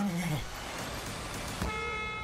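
Movie trailer soundtrack: a brief falling vocal fragment at the start over a low rumble, then about one and a half seconds in a steady, horn-like blare sets in and holds.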